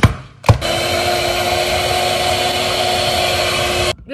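Electric hand mixer running steadily with its beaters in thick clam dip, starting after a couple of clicks about half a second in and cutting off suddenly just before the end.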